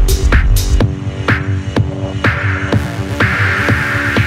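Techno music in a DJ mix: evenly spaced percussion hits over held synth tones, with the deep bass dropping out about a second in, like a breakdown, and a hissing noise swell building near the end.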